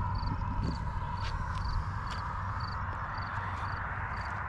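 Small enduro motorcycle riding along at low speed: engine running under steady wind noise on the camera microphone, with a faint high chirp repeating about twice a second.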